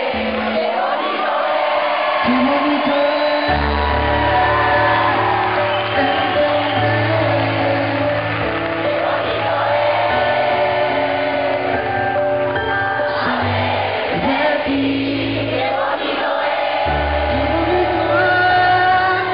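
Live pop ballad: a male lead voice singing into a microphone over a band, with sustained bass notes coming in about three and a half seconds in.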